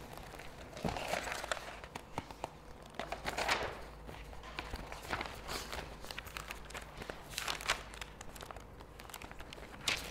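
Sheets of paper rustling faintly as they are handled and turned over, in several short bursts with small clicks and shuffles between them.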